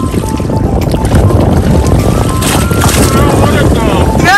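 Wind buffeting the microphone over sea water sloshing around a boat's hull, a steady loud rush heavy in the low end.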